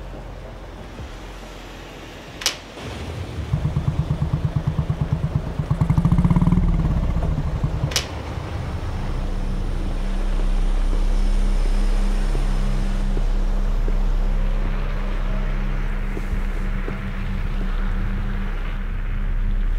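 Motorcycle engine: a click, then a few seconds of rhythmic throbbing that rises in pitch as it revs, then another sharp click and a steady idle through the rest.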